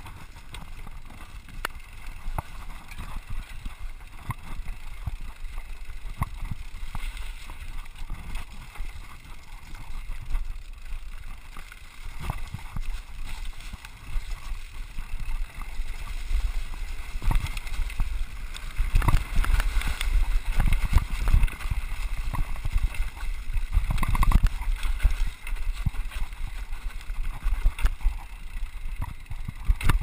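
Riding noise of a Scott Scale RC 29 hardtail mountain bike descending a rough dirt trail: rattles, clicks and knocks from the bike over the ground, with wind rumbling on the microphone. It grows louder and busier in the second half as the speed picks up.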